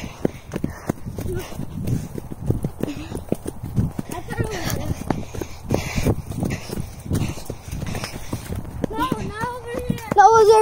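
Running footsteps, a quick uneven series of thuds on dry dirt and dead corn leaves, with the handheld phone's microphone jostled by the motion. A voice is heard near the end.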